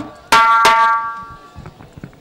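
A drum rhythm breaks off with one last loud, ringing drum stroke about a third of a second in. It dies away within about a second, leaving only faint background noise and a few soft knocks.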